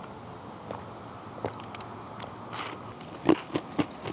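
Ice being bitten and crunched close to the microphone: a few sharp crunches, sparse at first, then the loudest three in quick succession near the end.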